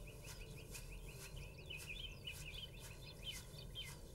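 Faint birdsong: a steady stream of short, high chirps in quick succession, growing busier and more varied toward the middle.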